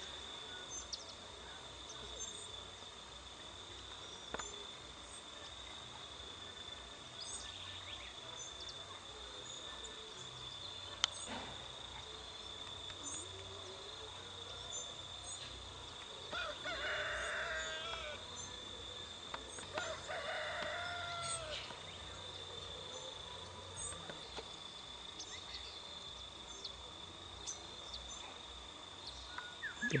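A rooster crowing twice, each crow about two seconds long, about halfway through. Behind it runs a steady high-pitched insect drone with scattered small bird chirps.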